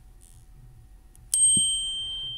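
Apple Watch Series 8 incoming-message alert: a single bright chime, a sudden ding about two-thirds of the way in that rings on with two steady high tones.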